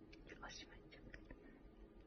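Near silence with faint whispering, a few soft breathy syllables in the first second or so.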